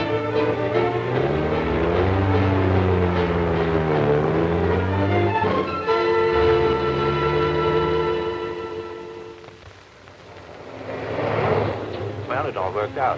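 Orchestral background score led by strings, playing sustained chords with sliding pitches. It fades out about ten seconds in, and a rush of noise then swells up near the end.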